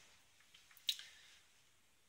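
A single short, faint click just under a second in, with a few fainter ticks before it, in an otherwise quiet room.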